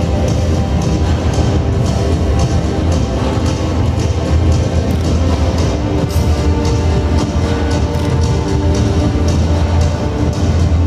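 Recorded music with a steady beat and a heavy bass line, playing loudly and without a break.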